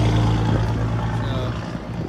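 A motor vehicle's engine running with a steady low hum that fades off about half a second in, leaving a weaker hum.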